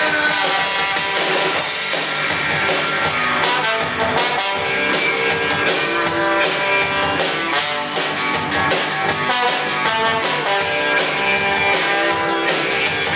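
Live rock band playing an instrumental passage: electric guitar, bass guitar and drum kit, with a trombone playing held notes over them.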